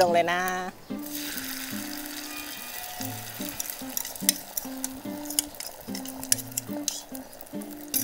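Beaten egg poured into hot oil in a frying pan, sizzling suddenly from about a second in, with sharp crackles of spitting oil throughout: a Thai-style omelette (khai jiao) starting to fry.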